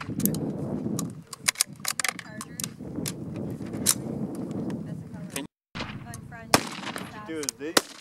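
Gunshots from several shooters firing rifles at once: many sharp cracks at irregular intervals, some coming in quick runs of two or three.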